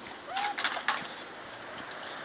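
A pit bull puppy chewing a toy: a quick run of crinkling clicks in the first second, with one short chirp-like squeak among them.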